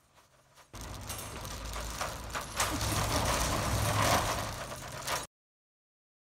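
Wire shopping cart rolling over paving stones, rattling, with a plastic crate of empty glass beer bottles clinking in it; it starts about a second in and cuts off suddenly near the end.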